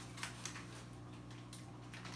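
Faint handling noises: a few light clicks and rustles as plastic deli cups are taken out of a cardboard shipping box, over a steady low hum.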